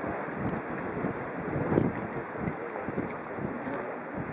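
Wind buffeting the camera microphone in uneven gusts, with one stronger gust about two seconds in.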